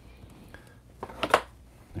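A baseball card in a rigid plastic holder being handled, giving two short plastic scrapes close together a little over a second in.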